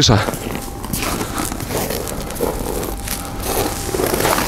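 Faint talk in the background over steady outdoor noise.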